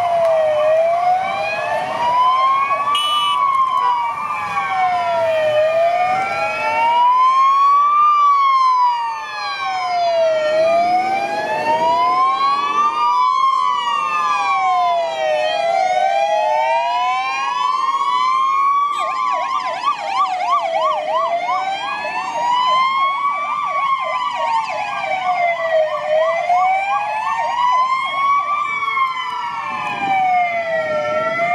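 Sirens of several Danish police vans wailing together, each rising and falling slowly over about five seconds and out of step with the others. About two-thirds of the way through, one siren switches to a fast yelp for a few seconds, then goes back to the wail.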